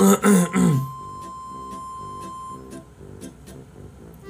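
A man's loud, drawn-out, wavering vocal 'oh' for about the first second, then soft background music with a light beat.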